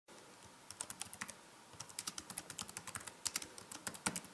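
Computer keyboard typing: a short run of keystrokes about three quarters of a second in, a brief pause, then a longer, quicker run of keystrokes.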